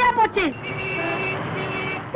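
A short burst of a man's voice, then from about half a second in the steady noise of a car and street traffic, heard from inside the car, with a thin steady high tone running over it.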